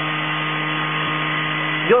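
A steady buzzing hum with hiss, made of several fixed tones that hold level throughout.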